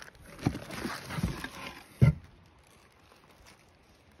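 Knocks and rustling from handling a wooden game board and its bubble-wrap packing in a cardboard shipping box: three knocks, the loudest about two seconds in.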